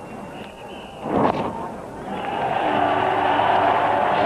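A cricket bat strikes the ball with a short loud crack about a second in. Then a stadium crowd's cheering and applause build and hold as the batsman reaches his fifty.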